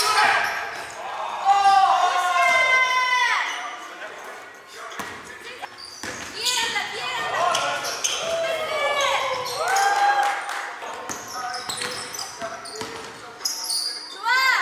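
Basketball sneakers squeaking on a hardwood gym floor in quick runs of short squeals, with a basketball bouncing, echoing in a large gym.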